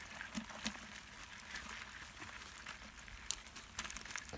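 Live freshwater crabs crawling over one another in a plastic bucket: faint scattered clicking and scratching of shells, with one sharper click about three seconds in.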